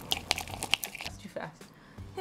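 Chopsticks stirring sticky natto in a bowl: a quick run of small clicks and tacky squelches that thins out after about a second.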